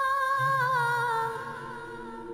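Background film score: a wordless voice holding one long note with a slight waver, fading about two-thirds of the way through as lower sustained tones come in beneath it.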